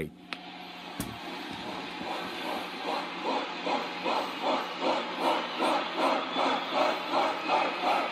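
Crowd chanting a name on a vinyl record in a steady rhythm, about two to three chants a second, growing louder, heard through the room. A single click about a second in.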